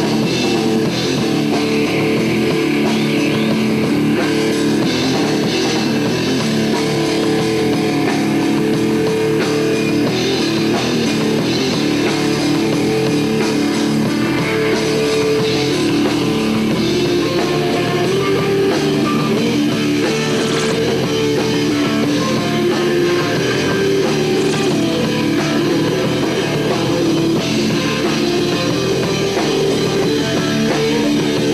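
Loud rock music with electric guitar and drum kit, playing steadily throughout.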